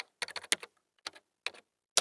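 Computer keyboard typing: a run of quick, irregular key clicks, thinning out about a second in and picking up again near the end.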